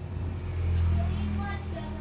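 A low rumble swells about half a second in and eases off toward the end, like a vehicle passing by, with a few faint higher tones over it.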